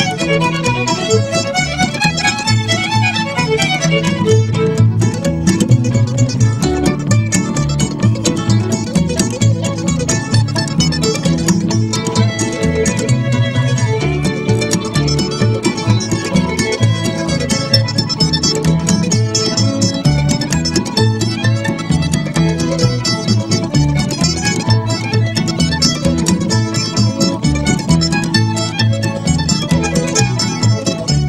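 Violin played fiddle-style in a lively bluegrass tune, with plucked-string accompaniment.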